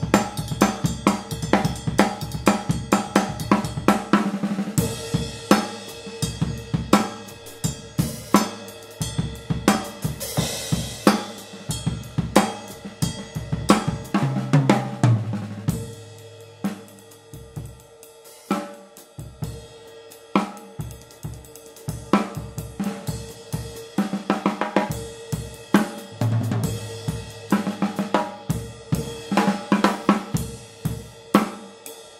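Drum kit groove with the ride pattern played on a Zildjian 21-inch K Custom Hybrid Ride, backed by snare, bass drum and hi-hat. The ride gives clear stick definition. A few tom notes come about halfway through.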